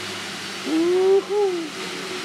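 A person's short wordless two-part vocal sound, a held note followed by a shorter falling one, over a steady background hum.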